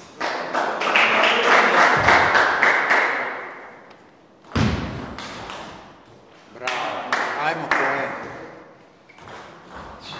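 Table tennis ball clicking off bats and the table in quick strokes, with loud shouting voices over it for the first few seconds and again about two-thirds of the way through.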